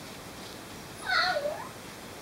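A Llewellin setter puppy gives a single short whine about a second in, dipping in pitch and rising again.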